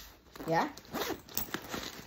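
Metal zipper on a nylon bag being worked by hand: a brief zipping sound.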